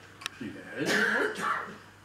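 A person clearing their throat for about a second, just after a short sharp click.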